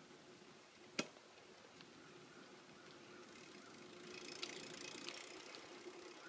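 Near silence: faint rolling noise of a bicycle on a paved road, growing slightly louder in the second half with a few light ticks, and one sharp click about a second in.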